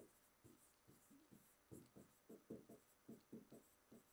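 Faint, short taps and rubs of a pen stylus on an interactive whiteboard screen as words are written: about a dozen brief strokes, most of them in the second half.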